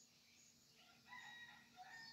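A rooster crowing faintly, one drawn-out call starting about halfway through, after near silence.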